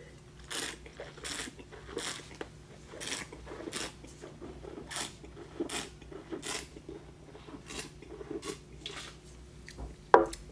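A wine taster slurping air through a mouthful of red wine to aerate it on the palate: about a dozen short, hissing sucks, roughly one a second, then spitting it out into a metal spit bucket.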